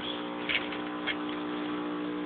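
A steady machine hum with several overtones, with faint clicks about half a second and a second in.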